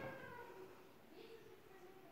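Near silence: room tone with a few faint, brief pitched sounds.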